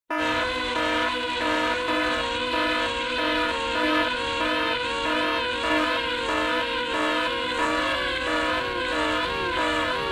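Propellers of a DJI Mavic Air quadcopter in flight, heard up close from a GoPro hung beneath it: a loud multi-tone whine whose pitches waver up and down as the four motors change speed, over rushing wind from the prop wash.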